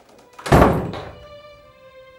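A wooden door shutting with a single heavy thunk about half a second in, over soft sustained string music.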